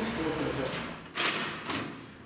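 Lift door opening as the car arrives at the floor: a short clatter a little after a second in and a smaller knock just before the end.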